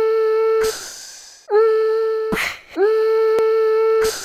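A voice humming one steady note three times. Each note scoops up into pitch, is held for about a second and is broken off by a short breathy hiss.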